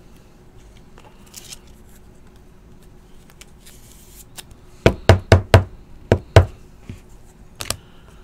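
Sharp knocks of a rigid plastic card holder (top loader) against the table as a card is put into it: four in quick succession about five seconds in, two more a second later, and a faint double tick near the end.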